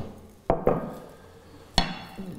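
Serving cutlery clinking against ceramic dishes as food is served onto a plate: two quick clinks about half a second in and a louder one near the end.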